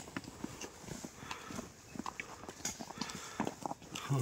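Irregular clicks and knocks of footsteps and trekking-pole tips striking a rough stone-stepped trail.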